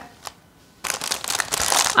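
Clear plastic food packaging crackling and rustling as it is handled, for about the last second, after a single small click.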